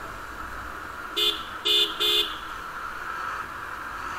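A vehicle horn sounds three short toots in quick succession, about a second into the ride, over the steady hum and wind noise of a moving motorcycle.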